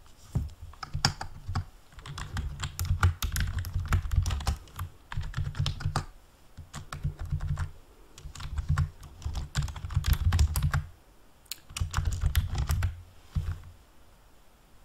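Fast typing on a large-print computer keyboard, a rapid clatter of keystrokes in bursts of a second or two with short pauses between.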